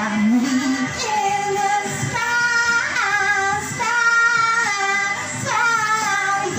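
A woman singing into a handheld microphone, holding a string of long notes, each about a second, with short slides between pitches.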